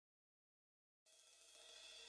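Background music: about a second of dead silence between tracks, then a rising cymbal swell that builds into the next track.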